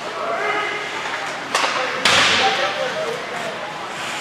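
Ice hockey play on the rink: a single sharp crack about a second and a half in, then a louder burst of scraping hiss half a second later that fades quickly, under shouted voices.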